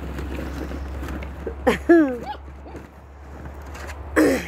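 Wind rumbling on the microphone, with faint light clatter of plastic ball-pit balls as puppies dig through them, and a short voiced exclamation or laugh about two seconds in.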